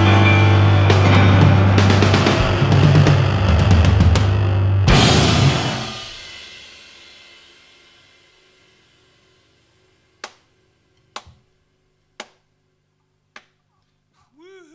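A piano, bass and drums rock trio playing loud, ending the song on a final hit about five seconds in that rings out and fades over the next few seconds. Near the end come four short, sharp taps about a second apart.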